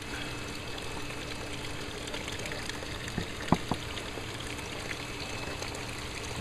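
Steady trickle of running water in an aquaponics system, with a couple of light taps about three and a half seconds in.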